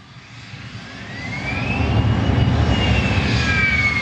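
Jet aircraft flyby sound effect: a rumble swells in, with a whine that rises in pitch, peaks about halfway through, then slowly falls as the plane passes.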